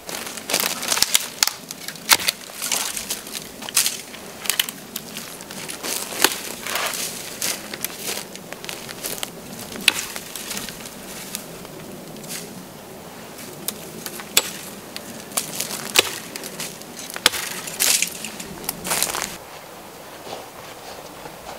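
Pine boughs being snapped and torn off a tree by hand: irregular sharp cracks of breaking twigs coming in clusters, with needles rustling between them.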